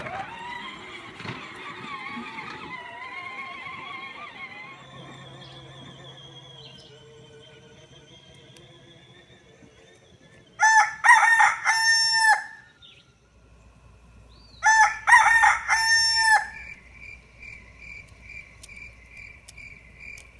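A rooster crowing twice, each crow about two seconds long and a few seconds apart.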